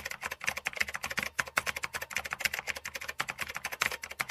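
Computer keyboard typing: a fast, even run of keystroke clicks, about ten a second.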